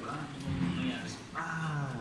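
Speech: voices talking in a close-up interview, with a drawn-out vocal sound in the second half.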